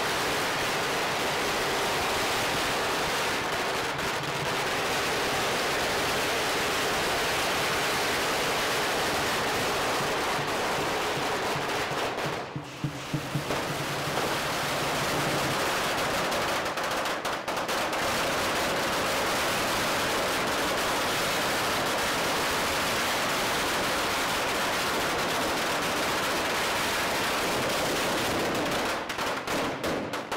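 A long string of firecrackers going off in a dense, continuous rapid crackle of bangs. There is a brief lull about halfway through, and the bangs thin to separate cracks near the end.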